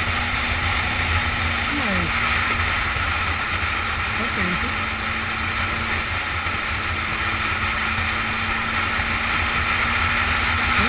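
Riding noise from a motorcycle-mounted camera: steady wind rush on the microphone over the low drone of the bike's engine, with a couple of brief falling tones about two and four and a half seconds in.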